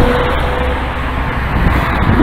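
Street traffic: a motor vehicle's engine hum passing close by and fading away within the first second, over a steady low rumble of road noise.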